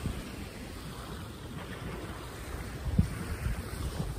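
Wind buffeting the phone's microphone over the sound of small sea waves lapping, a steady rushing noise with a brief low bump about three seconds in.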